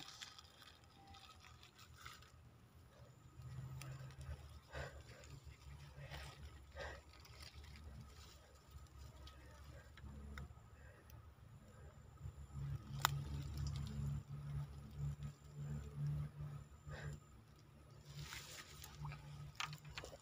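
Faint low rumble of wind buffeting the microphone, coming and going in gusts and strongest past the middle, with a few soft clicks and rustles from hands handling fishing line and a plastic bag of bait.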